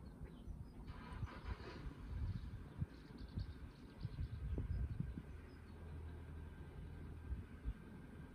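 Faint outdoor ambience: gusty low rumble of wind on the microphone, with a steady low hum joining in about halfway through.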